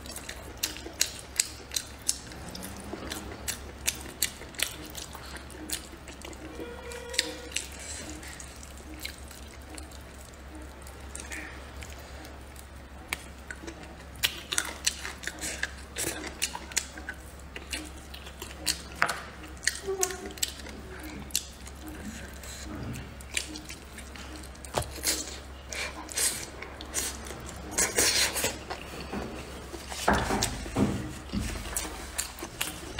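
Close-miked eating of braised pork trotter: chewing and sucking on the meat and skin, with many short wet smacks and clicks at irregular intervals.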